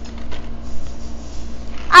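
A boy laughing softly after his joke, over a faint steady hum; his voice comes in right at the end.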